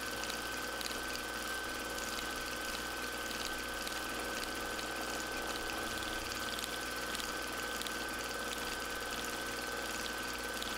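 Domestic sewing machine running steadily during free-motion stitching, a constant whine over a low hum.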